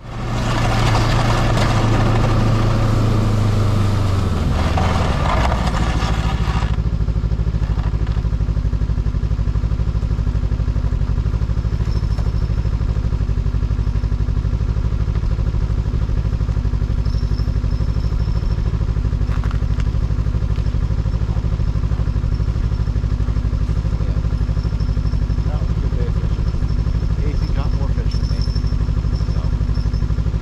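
Small vehicle engine running at a steady pitch while travelling across the ice, heard from on board. For the first six seconds or so a loud rushing noise lies over it and then cuts off abruptly.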